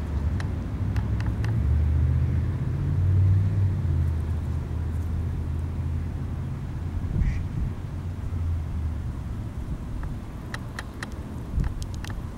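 Low engine drone of a passing motor vehicle that swells over the first few seconds and fades away by about nine seconds. A Canada goose grazing close by makes sharp little clicks and plucks near the start and again near the end.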